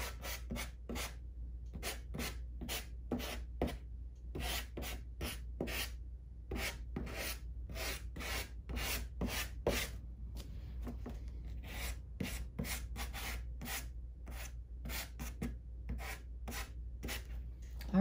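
Soft pastel stick scratching and rubbing across pastel paper in quick short strokes, two or three a second, as the grasses and ground of a landscape are laid in.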